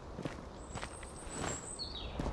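Soft footsteps, a few steps about half a second apart, with a faint thin high tone above them.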